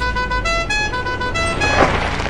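A musical car horn playing a quick tune of about eight short notes, followed near the end by a brief rush of noise.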